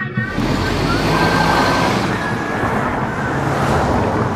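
Sound effect of city traffic: a steady, loud rushing of passing cars that starts abruptly where the singing cuts off.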